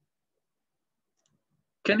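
Near silence, then a man's voice starts just before the end.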